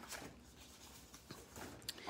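Faint rustling of sheets of cardstock being handled, with a couple of light ticks.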